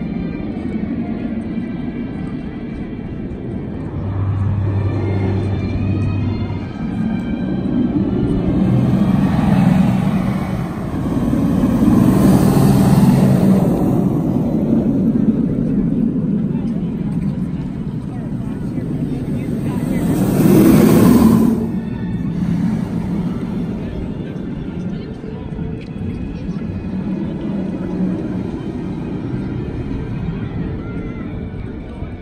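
Fury 325, a Bolliger & Mabillard giga coaster, its train running along the steel track in a rising and falling rumble that swells to a loud pass around twelve seconds in and again, shorter and sharper, about twenty-one seconds in, over park crowd voices and background music.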